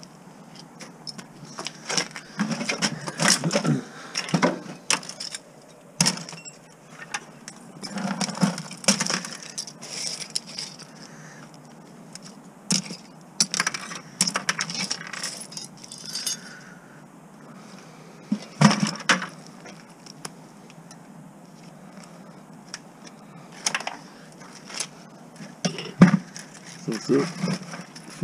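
Small pieces of scrap copper clinking and jangling as they are handled and tossed into plastic buckets. The clicks come in groups every few seconds, and the loudest is a sharp clack near the end.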